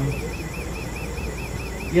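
Steady low hum of running lab equipment, with a high warbling tone that pulses about five times a second.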